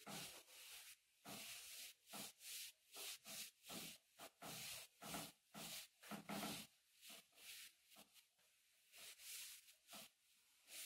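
Blackboard duster wiping chalk off a blackboard: a faint run of short swishing strokes, about two a second, easing off for a couple of seconds near the end.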